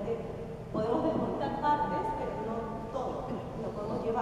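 Speech only: a woman lecturing in Spanish.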